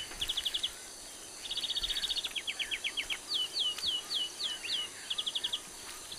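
A bird calling repeatedly: quick runs of short, high chirps alternating with single downward-slurred whistles, over a faint outdoor hiss.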